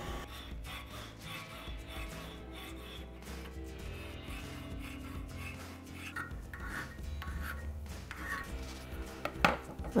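Hand file stroking back and forth across a steel part clamped in a bench vise, with a sharp knock near the end.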